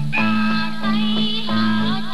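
Film song: a woman singing with instrumental accompaniment over a steady bass line.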